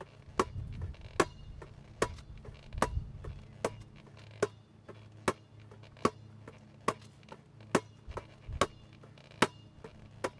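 A basketball smacking into the hands as it is passed around the player's back, in a steady rhythm of about one sharp slap every 0.8 seconds, about a dozen in all.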